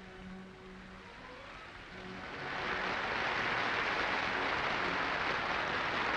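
Audience applause that swells up about two seconds in and then holds steady, following a few faint, quiet music tones.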